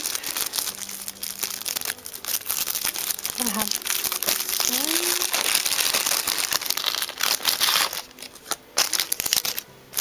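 Plastic packaging being handled and crinkled, a dense crackling that runs on until near the end and breaks off, with one last short burst.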